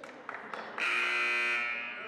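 Gym scoreboard buzzer sounds once, starting about a second in and holding for about a second before fading: the horn that signals a substitution.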